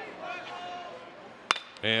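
Metal baseball bat hitting a pitched changeup: one sharp crack about one and a half seconds in, over a low murmur of crowd voices.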